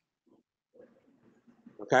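Speech only: a short pause in a man's talk with faint, low, broken background sounds, then he says "Okay?" near the end.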